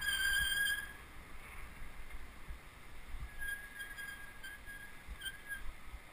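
Bicycle brakes squealing in a high, steady tone as the bike slows to a stop: loud for about a second at first, then fainter and broken up in the second half.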